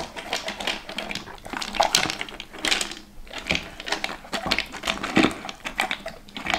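A dog eating dry kibble from a ridged slow-feeder bowl: rapid, irregular clicking and rattling as the kibble is nosed around the bowl's ridges, with crunching. The ridges make the dog eat much slower.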